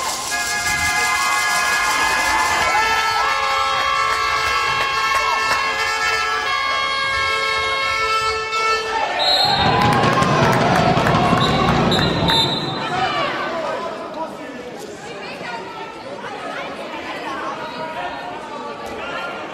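Handball play in a sports hall: the ball bouncing on the floor and players shouting, under a long held chord of steady horn-like tones for the first half. Short high whistle blasts come about nine and twelve seconds in, with loud shouting around them, and the sound is quieter after that.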